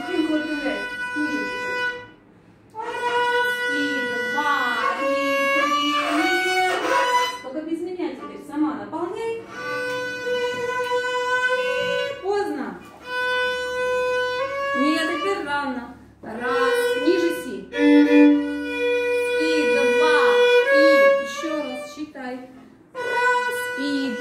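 A young student playing a passage of a violin concerto on the violin: held bowed notes stepping between pitches, with short breaks about two seconds in, around sixteen seconds in and just before the end. A woman's voice is heard at times over the playing.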